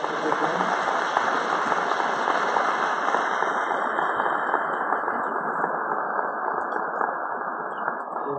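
Congregation applauding, a dense steady clapping whose brightest, crispest part thins out over the second half.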